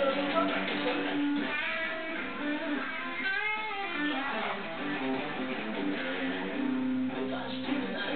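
Electric guitar played through an amplifier, a rock lead line over held low notes, with notes bent up and down about three seconds in.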